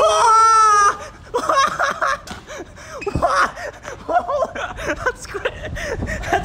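A person's loud, drawn-out, wavering vocal cry that breaks off about a second in, followed by short, choppy vocal sounds with bending pitch, like whimpers or laughs.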